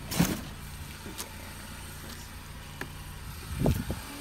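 A vehicle engine running steadily nearby as a low hum. Two short, louder thumps come just after the start and near the end.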